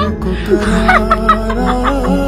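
Background music with a steady low drone and held tones, with short bursts of chuckling laughter over it from about half a second in.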